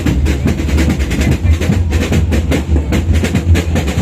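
Marching band drumline playing: rapid, dense snare and percussion strokes over heavy bass drum.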